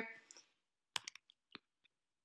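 A few faint, sharp clicks of a computer mouse, two close together about a second in and a couple more shortly after.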